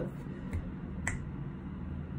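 A single sharp finger snap about a second in, with a fainter click just before it, over a low steady hum.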